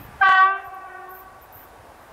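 Train horn on an approaching passenger train: one short blast about a quarter second in, a single steady note that trails off over about a second.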